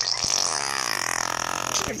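A baby blowing a long raspberry: a wavering, spluttery buzz of the lips that lasts almost two seconds and stops shortly before the end.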